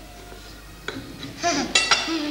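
A knife and crockery clinking on a china plate as cake is cut and served: a single sharp click about a second in, then a ringing clink near the end.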